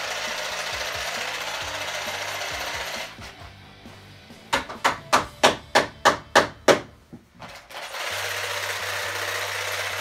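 Building noises: a power tool runs steadily for about three seconds, then about eight hammer blows land at roughly three a second, and the power tool starts again near the end.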